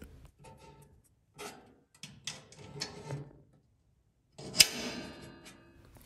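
Light metallic taps and clicks from small steel grill hardware being handled and fitted, with one sharper metal clink a little past the middle that rings briefly.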